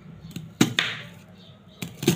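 Kitchen knife cutting into a peeled white onion held in the hand: two sharp, crisp cuts about half a second in and another near the end.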